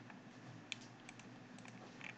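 A few faint, irregular clicks of computer keyboard keys.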